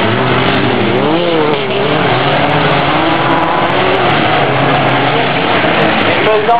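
Race engines of dirt-track buggies and cars running hard, several at once, their pitch swinging up and down as they accelerate and lift off.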